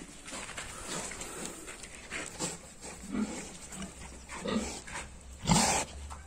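A pig grunting softly a few times as it moves about, then a short, loud snort right at the microphone near the end as it pushes its snout up to it.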